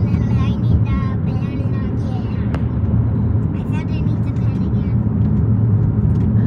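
Steady low road and engine rumble inside a moving car's cabin, with brief indistinct talk.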